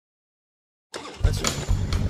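Silence, then a motorcycle engine starts up loud about a second in, with a deep, rumbling exhaust note.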